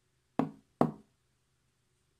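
Two sharp knocks about half a second apart, each dying away quickly: a smartphone being set down into a wooden phone stand.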